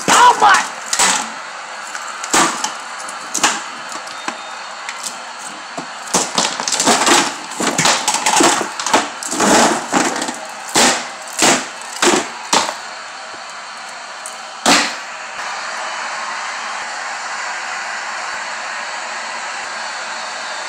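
Plastic wrestling action figures and plastic toy pieces knocking and clattering against a wooden floor and toy ring: a run of about fifteen sharp knocks, thickest in the middle, the last about three-quarters in, followed by a steady hiss.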